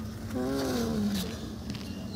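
A woman's long, drawn-out hesitation sound "à", sliding down in pitch and lasting nearly a second, over a low background rumble.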